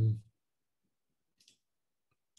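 A man's drawn-out "um" trails off just after the start, followed by near silence with one faint, brief click about one and a half seconds in.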